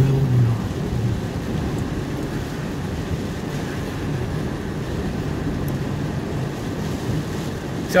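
Steady road noise inside a moving vehicle's cabin: the engine running and the tyres rolling on rain-wet pavement.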